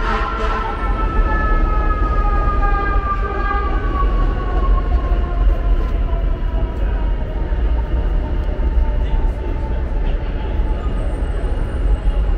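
Elevated subway train running on the overhead tracks, its whine sliding slowly down in pitch over the first several seconds as it passes, over a steady low street rumble.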